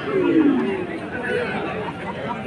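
Many overlapping voices of a crowd of spectators and players chattering and shouting, with one loud falling shout in the first half second.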